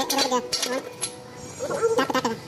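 A person's voice, speaking in short stretches, with a quieter gap about halfway through.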